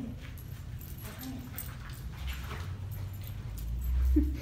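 A small dog making a few short whimpers.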